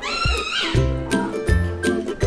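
A rubber squeaky toy ball squeezed once: a single high squeak lasting under a second that wavers slightly in pitch. Background music with a steady beat plays throughout.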